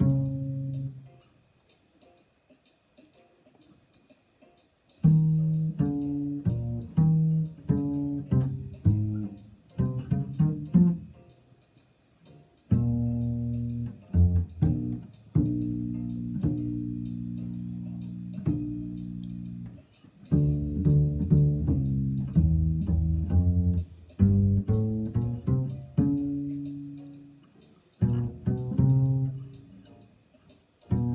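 Solo upright double bass played pizzicato: a line of plucked notes, with a pause of a few seconds near the start and several long, ringing notes around the middle.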